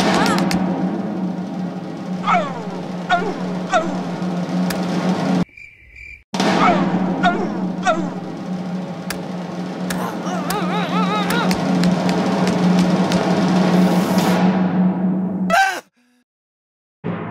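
Jackhammer sound effect: a rapid, steady rattle of hammering that cuts out briefly about five and a half seconds in, then runs on and stops suddenly near the end.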